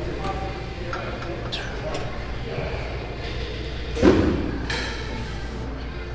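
Indistinct low voices and a steady low hum of gym background, with a few faint clicks and one brief louder sound about four seconds in.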